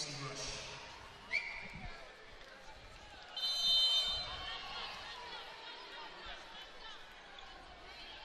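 A referee's whistle blows once about three and a half seconds in: a steady shrill note lasting about a second, the signal that authorises the serve. Before it, a few thuds of the volleyball being bounced on the hardwood court can be heard over a low arena crowd murmur.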